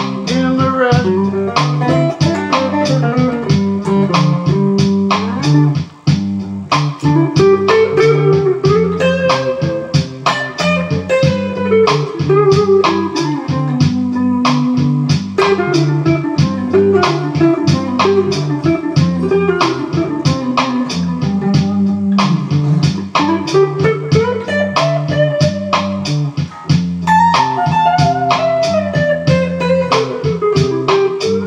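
Electric guitar playing a lead line with string bends and slides, over a steady repeating bass-and-beat backing.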